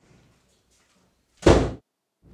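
A single loud bang on a door, sudden, dying away within a moment, about one and a half seconds in.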